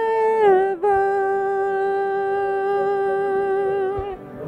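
A man singing a worship song into a headset microphone. After a brief break just under a second in, he holds one long, steady note until near the end.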